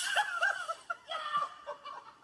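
A girl laughing: a breathy burst, then short giggling pulses that trail off.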